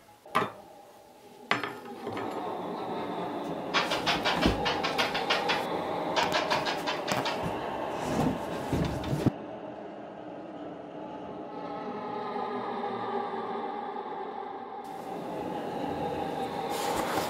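Eerie ambient drone with a fast, even clatter over it for several seconds; the clatter cuts off abruptly about nine seconds in, leaving the drone alone.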